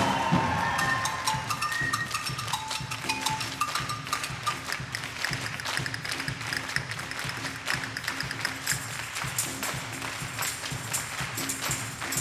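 Many hands clapping in rhythm with light hand percussion, including a tambourine, in a quiet, drumless break of a wind-band pops number. A short falling run of soft wind notes sounds in the first three seconds.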